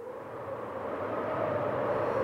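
A noisy rumble fades in from silence and swells steadily louder, with a faint hum running through it.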